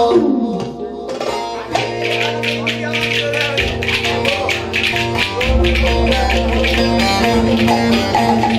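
Ankara oyun havası folk dance music: a saz plays the tune over a steady beat, joined about two seconds in by wooden spoons (kaşık) clacked in a fast, even rhythm by the dancers.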